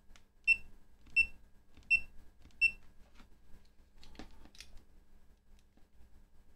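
Four short, high electronic beeps about 0.7 s apart from the FNIRSI LC1020E LCR meter's beeper as its front-panel keys are pressed, then a few soft clicks of the test clip being handled.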